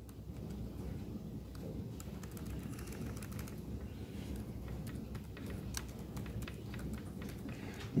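Typing on a computer keyboard: irregular runs of key clicks as a command is entered.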